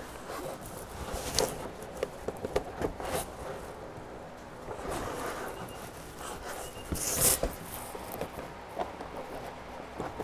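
Scattered light clicks and knocks of hands fitting lock washers and nuts onto machine screws through computer fans, with a louder rustling scrape about seven seconds in.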